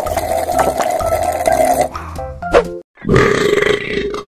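Cheerful background music with a steady beat stops about two seconds in, and after a short gap a loud comic burp sound effect of about a second follows, as though after a drink.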